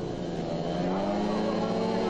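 500cc four-stroke speedway motorcycle engines held at high revs at the starting tapes, the note rising a little and then holding steady as they wait for the start.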